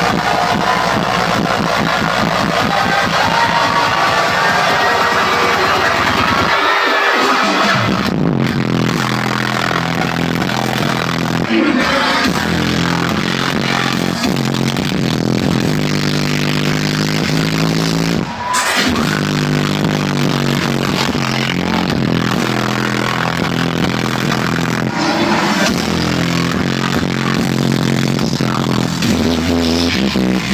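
Live dubstep DJ set played very loud over a club sound system, heard through a phone microphone that distorts under the heavy bass. The bass drops out briefly about seven seconds in, then returns.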